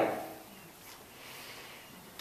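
The end of a woman's spoken word dying away in the hall's reverberation, then quiet room tone.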